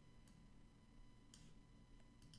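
Near silence: faint room tone, with one faint click about a second and a half in.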